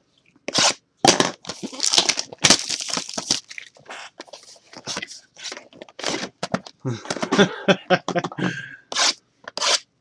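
Cardboard hobby box of trading cards being torn open and its plastic wrapping crinkled: a run of irregular tearing, rustling and crinkling sounds, with a short laugh near the end.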